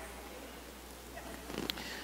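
Faint room tone with a steady low hum, and a small click near the end.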